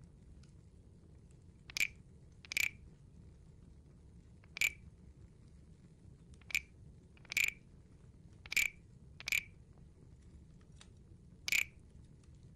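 Small wooden frog guiro played with its stick: eight short, separate croaks at uneven intervals, each brief and bright.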